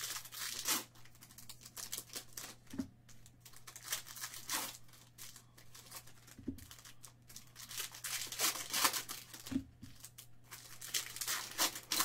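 Foil trading-card pack wrappers from 2018 Bowman's Best being torn open and crinkled by hand, in irregular crackly bursts. The cards are handled between the bursts, over a faint steady low hum.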